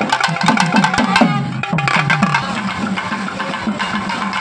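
Nadaswaram playing a melody over drum strokes that drop in pitch, with fast, sharp clicking strokes that stop about a second in.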